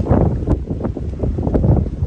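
Wind buffeting a phone's microphone outdoors: a loud, uneven low rumble.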